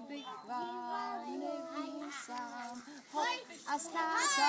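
Young children and a woman singing a nursery song together, in held notes that step up and down in pitch, with a louder, higher child's call about three seconds in.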